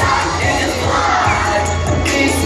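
Recorded dance music with a heavy bass playing loudly, with an audience shouting and cheering over it.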